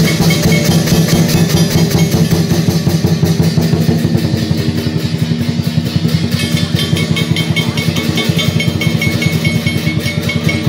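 Lion dance percussion: a large drum beaten in a fast, even roll with clashing cymbals, the cymbal ringing growing brighter about two-thirds of the way through.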